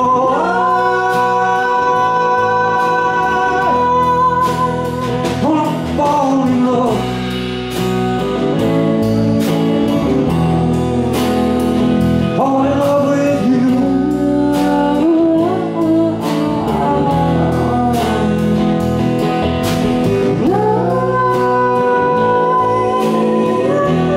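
Live band playing a song: sung vocals holding long notes over electric guitar and a drum kit keeping a steady beat.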